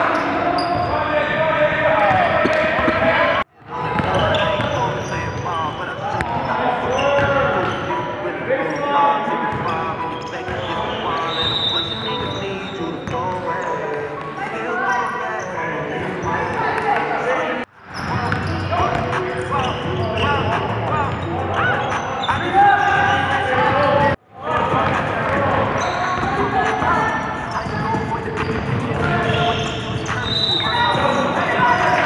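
Live gym sound of a basketball game: a basketball bouncing on the hardwood and a hubbub of players' voices, echoing in the hall. It is broken by three brief gaps where clips are cut together.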